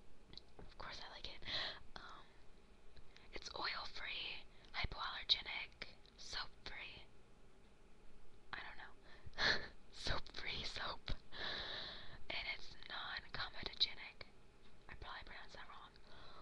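A woman whispering close to the microphone in short phrases, with a pause of about a second and a half near the middle.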